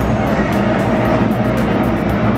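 Loud stadium crowd din with music playing and a quick, regular beat running through it.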